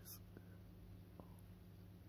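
Near silence: room tone with a faint steady hum and two faint ticks.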